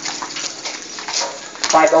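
Background chatter of spectators and players at a basketball game, with a sharp knock about one and a half seconds in, then a man saying "okay".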